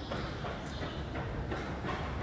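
Footsteps in a concrete pedestrian underpass, a few evenly spaced steps about two-thirds of a second apart over a steady low rumble.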